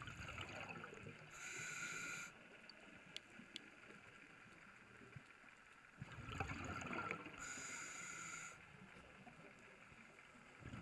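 Underwater breathing of a diver on a regulator, heard twice about six seconds apart: each breath is a rushing burst of exhaled bubbles followed by a hissing, whistling draw of air. Faint sea hiss lies between the breaths, with two small clicks.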